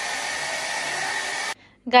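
Handheld hair dryer blowing steadily, a rush of air with a faint steady whine; it cuts off suddenly about three-quarters of the way through.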